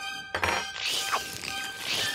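Cartoon sound effects over background music: a thud about a third of a second in, then a long hissing, slobbering noise as a germ character drools slime onto sandwiches.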